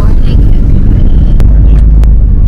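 Loud, steady low rumble of engine and road noise inside the cabin of a moving van, with a single sharp click about a second and a half in.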